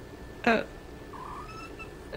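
A tabby cat giving one short, faint meow a little past a second in, its pitch rising then falling. Just before it, a woman's brief 'oh' is the loudest sound.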